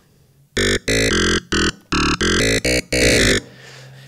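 Ableton Operator FM synth patch played as a quick run of about eight short, bright notes. This is an early stage of a dubstep-style growl bass: a sine carrier with a second operator set to a hand-drawn harmonic shape, before any filter, LFO or effects are added.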